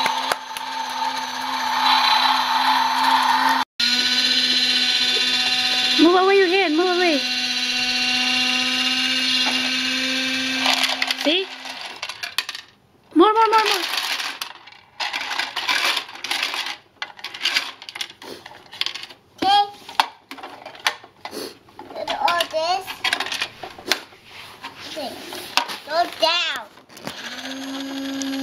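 Battery-powered toy garbage truck's small electric motor whirring steadily as it drives the lift arm, with a brief cut-out a few seconds in; the motor stops about twelve seconds in. Scattered clicks and short knocks of the plastic toy being handled follow.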